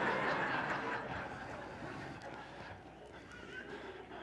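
A congregation laughing together in a church hall, the laughter dying away gradually over a few seconds.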